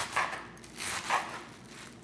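A kitchen knife chopping through fresh spinach leaves and stems on a cutting board: four crisp cuts in two quick pairs.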